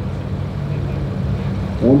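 Low, steady rumble of distant race-car engines running at the drag strip. An announcer's voice starts in near the end.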